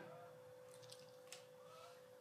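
Near silence: room tone with a faint steady hum and a few very faint ticks.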